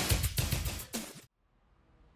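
Loud music with a heavy drum beat that cuts off suddenly just over a second in, leaving near silence.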